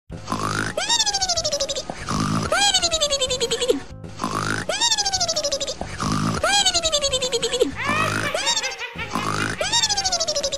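Cartoon pig snoring: a rough low snore on each in-breath, then a whistle that slides down in pitch on each out-breath, repeating about every two seconds.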